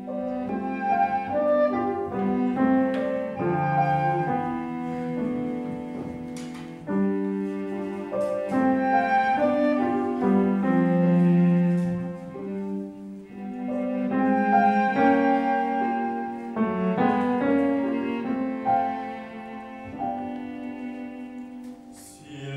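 Chamber ensemble playing an instrumental passage of a modern opera score, with no singing. It moves through a run of held, changing chords.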